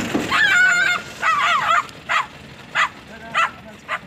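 A dog whining: two long, high, wavering whines in the first two seconds, then four short cries about half a second apart.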